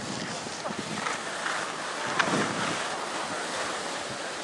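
Steady rushing noise of riding down a snowy ski slope: wind buffeting the microphone and edges sliding and scraping over packed snow, with a sharper louder scrape a little past halfway.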